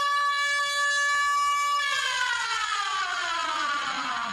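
An edited-in comic sound effect for a fast dash: one long pitched tone that holds steady for about two seconds and then slides steadily down in pitch.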